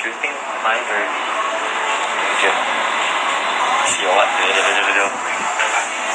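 Loud, steady hubbub of many indistinct voices talking at once, with one voice standing out briefly about four seconds in.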